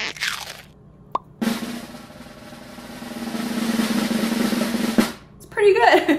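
A snare drum roll that swells steadily louder for about three and a half seconds and then cuts off abruptly.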